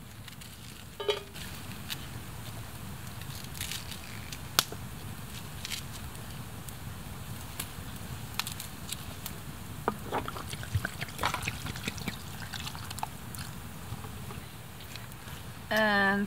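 Knife slicing spring onions held over a metal pot: scattered small clicks and taps as the blade cuts through and the slices drop into the pot, busiest about ten seconds in.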